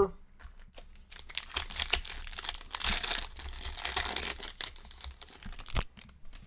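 Foil wrapper of a Panini Select football card pack being torn open and crinkled. The crackling runs mostly from about two seconds in until near the end.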